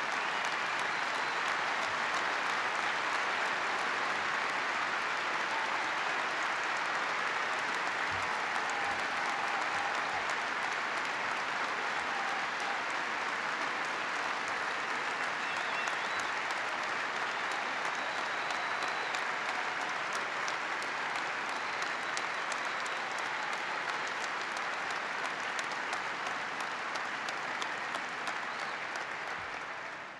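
A large arena crowd applauding steadily in a long standing ovation, fading out near the end.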